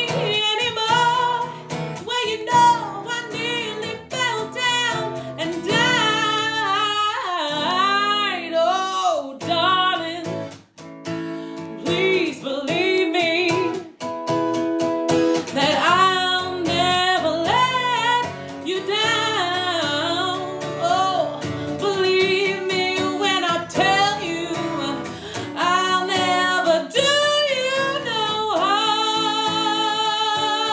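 A woman singing with strong vibrato over a strummed acoustic guitar, ending on a long held note.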